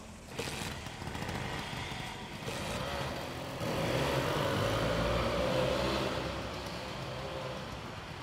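Lambretta C scooter's small two-stroke single-cylinder engine running and revving. It comes in loud about three and a half seconds in, then fades.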